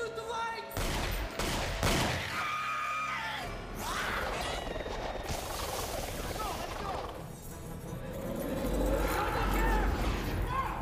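Horror-film soundtrack: three sharp bangs like gunshots in the first two seconds, with breaking glass, then wordless cries or screams over dark score music and a low rumble that swells near the end.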